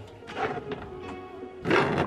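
Background music with a steady pitched accompaniment, over which come rustles and a thump of clothes being pushed into a front-loading washing machine drum, the loudest near the end.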